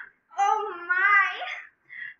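A young woman's long, drawn-out, sing-song 'ooh', held for over a second with a wobbling pitch, as an eager exclamation. A short breath comes just before it and again near the end.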